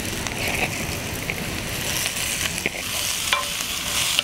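Fresh spinach leaves sizzling in hot butter and olive oil with sautéing onion in a pan, stirred with a wooden spoon, with a few light clicks of spoon and leaves against the pan over the steady frying hiss.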